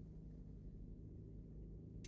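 Faint, low, steady rumble inside a car's cabin while it drives along a bumpy dirt road.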